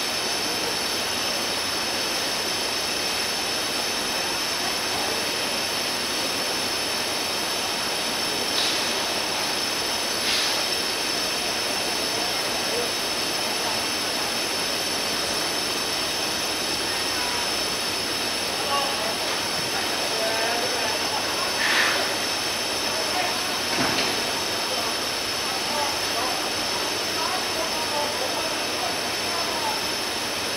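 Open-air football match ambience: a steady, loud hiss throughout, with players' distant shouts and a few sharp ball kicks, the strongest about two-thirds of the way through.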